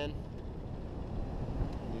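Steady low rush of airflow buffeting the microphone of a hang glider in free flight, an even noise with no engine note in it.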